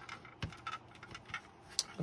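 A few light clicks and taps of a small plastic ring light and its mount being handled, the sharpest about half a second in.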